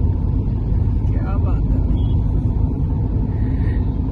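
Steady low rumble of a moving car heard from inside the cabin: engine and road noise.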